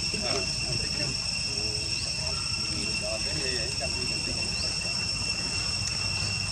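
Insects chirring steadily at two high pitches, over a low background rumble.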